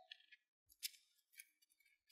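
Faint, crisp rustling of thin Bible pages being turned, in several short strokes about half a second apart.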